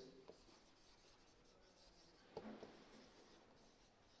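Near silence with the faint strokes of a marker writing on a whiteboard, including a short scratch a little past halfway.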